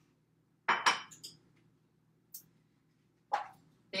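Kitchen containers and dishes clinking and knocking on a countertop as they are handled. There are a couple of sharp clinks just under a second in and another near the end.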